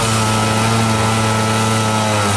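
Angle grinder cutting into a metal door, a steady high motor whine over the hiss of the cutting disc on steel.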